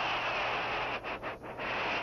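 Football stadium crowd noise: a steady wash of spectators' voices that dips briefly about a second in.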